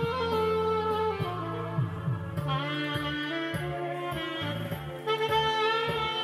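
Music: a saxophone playing a melody of long held notes over a bass line.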